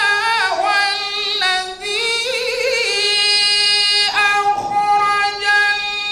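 A man chanting Qur'an recitation in a high solo voice, holding long notes and sliding through a wavering, ornamented passage midway, with a short break about four seconds in.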